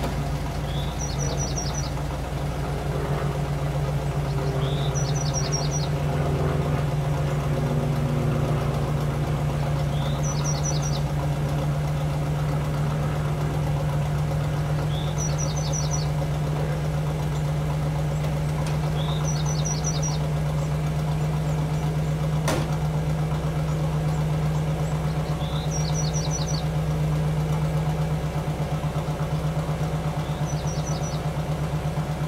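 1969 Chevrolet C10's 350 small-block V8 idling steadily. A bird repeats a short high song phrase every four to five seconds over it, and there is a single sharp click about two-thirds of the way through.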